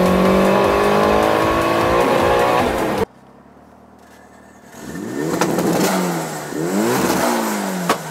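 Modified 2003 Mitsubishi Lancer engine pulling hard under acceleration, heard from inside the cabin, its pitch climbing steadily for about three seconds. After a sudden cut and a brief lull, the engine is revved twice through its large single exhaust tip, each rev rising and falling.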